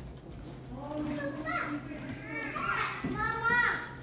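Children's voices calling and chattering in an indoor play area, building over a couple of seconds, over a steady low hum.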